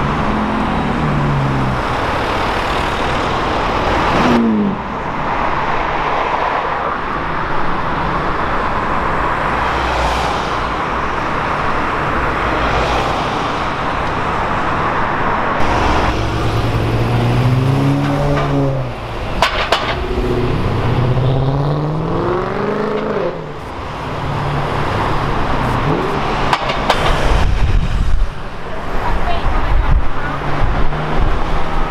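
Supercar engines passing and accelerating in city traffic, with engine notes rising and falling with the revs. Several pulls climb in pitch through the middle. Near the start it is a Lamborghini Aventador SV's V12 driving by.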